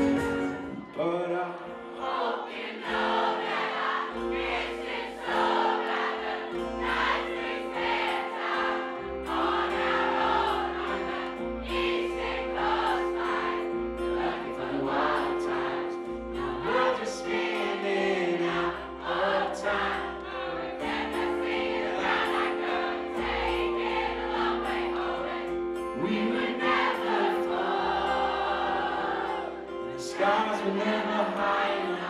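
Live band with strummed acoustic guitar and electric guitar, and a crowd singing along in many voices.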